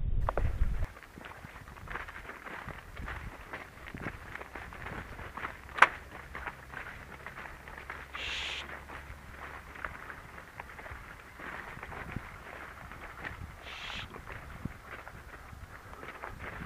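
Faint footfalls and rustling of a walker crossing a crop field, after a low rumble in the first second. A single sharp click about six seconds in and two short hisses.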